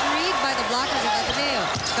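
Voices shouting over a steady crowd din in an indoor arena during a volleyball rally, with sharp smacks of the ball being struck, one near the end.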